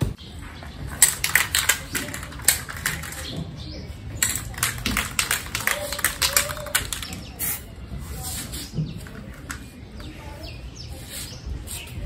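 A Bosny aerosol spray-paint can being shaken, its mixing ball rattling in quick, dense clicks for most of the first seven seconds, with birds chirping.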